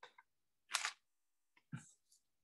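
Three short clicking noises on a video-call microphone, the loudest about three-quarters of a second in, with dead silence between them where the call's noise gate shuts.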